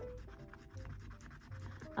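Faint, repeated scratching of a fingernail on the holographic coating of a paper scratch-off card, over quiet background music.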